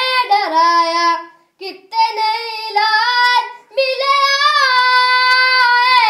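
A boy singing solo and unaccompanied, in a bending, ornamented melody. He pauses briefly about one and a half seconds in and again near four seconds, then holds one long note to the end.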